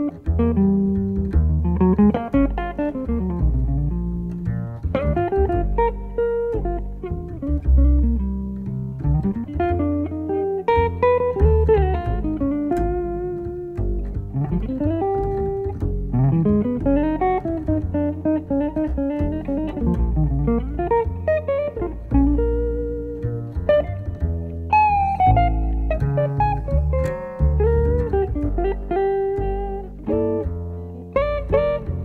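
Instrumental music led by a guitar playing a melody with sliding, bending notes over a bass line.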